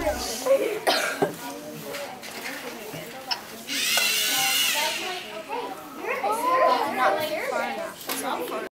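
Indistinct chatter of children's voices in a classroom, with a louder, higher burst of voices about four seconds in.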